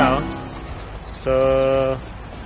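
A steady, high-pitched chorus of insects, crickets or cicadas, trilling without a break. A voice says a short "oh" at the start, and a steady held voiced tone sounds near the end.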